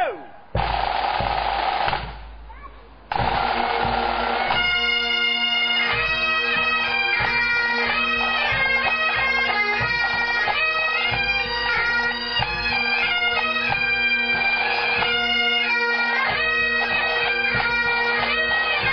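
Highland bagpipes of a pipe band: after two short noisy bursts in the first few seconds, the pipes play a tune over steady drones.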